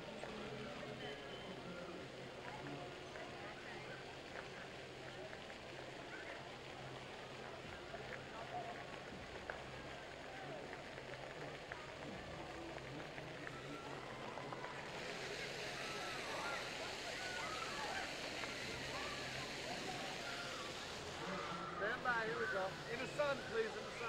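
Jets of an interactive splash fountain spraying steadily, with children shouting and a crowd chattering among them. The spray hiss grows louder about fifteen seconds in.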